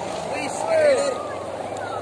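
Steady droning hum of kite hummers (sendaren) sounding overhead, with a voice calling out about a second in.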